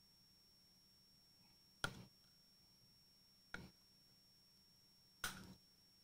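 Three sharp knocks of a knife, roughly a second and a half apart, as a grilled porterhouse steak is carved off the bone on a wooden cutting board; each knock dies away quickly.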